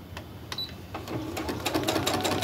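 Brother sewing and embroidery machine starting to stitch about a second in, its needle running in a fast, even clatter over a steady motor hum, after a couple of separate clicks.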